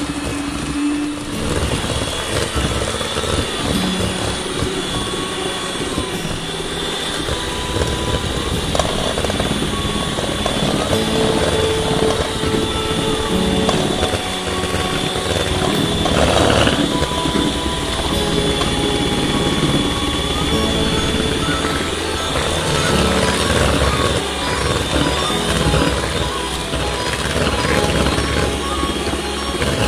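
Electric hand mixer running steadily at low speed, its beaters churning thick cake batter in a stainless steel bowl, with background music over it.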